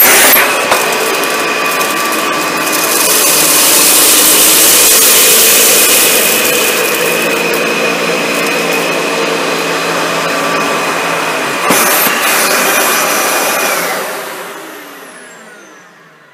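Dyson DC65 upright vacuum cleaner running on carpet, a steady rushing noise with a high whine. There is a single knock about three-quarters of the way through. Near the end the whine stops and the motor winds down after being switched off.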